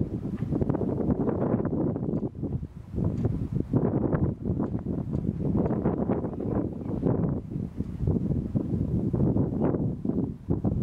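Wind buffeting the microphone: a gusting low rumble that swells and drops irregularly.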